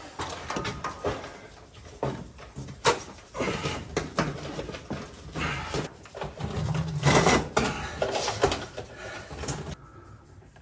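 Hand-handling noises from a wire bundle in corrugated plastic loom being pulled and pushed into place: irregular rustling and scraping with scattered clicks and knocks, loudest about seven seconds in.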